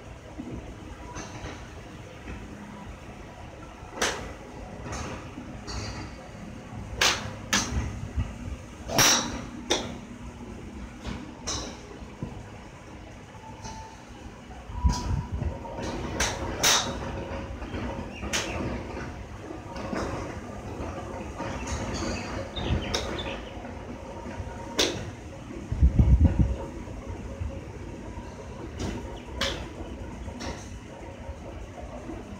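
Golf clubs striking balls at a driving range: a dozen or more sharp clicks spread irregularly through, some close and loud, others fainter and farther off. A low rumble swells twice, the louder one near the end.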